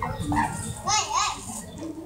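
Children's voices in the background, with a couple of rising-and-falling calls about a second in.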